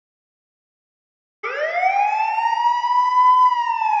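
Police car siren starting about a second and a half in, its pitch rising then holding steady, with a slight dip at the end.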